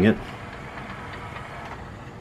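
Sony CDP-CE375 CD changer's tray mechanism running: a steady, faint whir from the motor and plastic gears as the five-disc carousel tray drives out.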